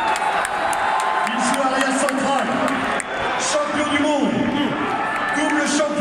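A man's voice over a stadium public-address system, speaking to a large crowd that murmurs under it, with scattered hand claps.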